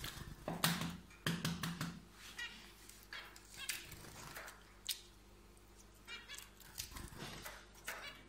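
Hard-boiled egg being cracked and peeled by hand over a bowl: eggshell crackling and clicking in short, irregular bursts, with brief high chirps in the background.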